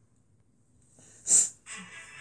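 A short, loud breathy whoosh a little over a second in, after a quiet start; then the story app's background music begins near the end.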